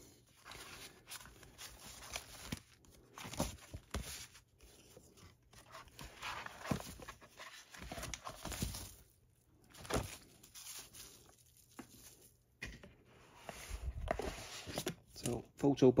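Paper prints and plastic packaging being handled: irregular rustles and crinkles, with a few light clicks and knocks.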